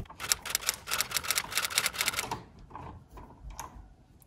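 A quick run of sharp clicks, about seven a second for two seconds, then a few fainter, scattered clicks.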